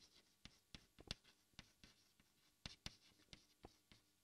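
Faint chalk on a blackboard: a string of short, irregular taps and scratches as a word is written stroke by stroke.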